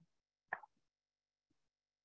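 Near silence, broken by one short knock about half a second in and two fainter ticks after it.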